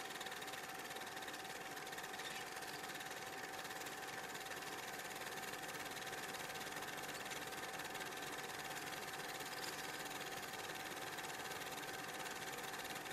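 Faint steady hiss with a thin constant whine; no music or voice.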